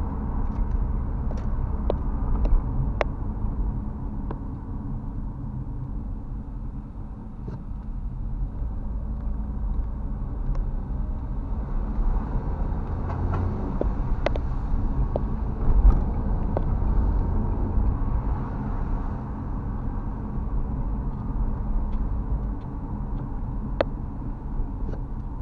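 Car cabin noise while driving on a wet road: a steady low rumble of engine and tyres, with scattered faint ticks and a louder thump about sixteen seconds in.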